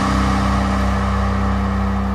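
A loud, steady low rumbling drone under a hiss of noise that thins out gradually: a cinematic whoosh-and-rumble sound effect.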